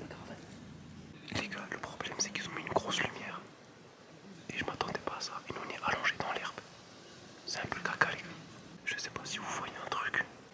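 Whispered speech: several short whispered phrases with quiet gaps between them.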